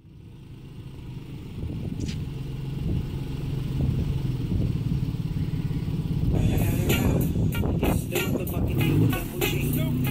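Porsche 911 Cabriolet's flat-six engine running as the car drives along, fading up from silence over the first couple of seconds. About six seconds in, music with sharp, rattling percussion comes in over it.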